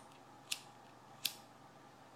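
A handheld lighter being struck twice, about three-quarters of a second apart, with short sharp clicks, to light a tobacco pipe.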